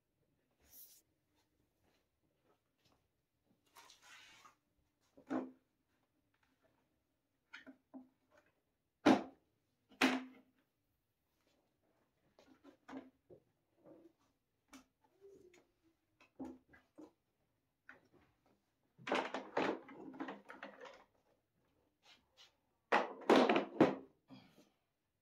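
Hart plastic folding workbench being collapsed: scattered plastic clicks and knocks as its frame and metal legs fold, with two loud thunks about nine and ten seconds in and a run of clattering knocks near the end as the folded bench is handled down to the floor.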